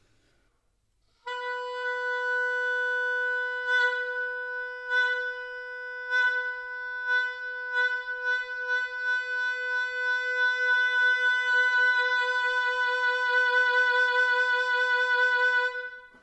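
An oboe holds a single note from about a second in, with accents pushed from the breath about once a second at first, then coming faster. As the held tone swells louder, the accents shrink and merge into an even, intense vibrato near the end. This is a vibrato exercise, going from big accents over a soft tone to waves.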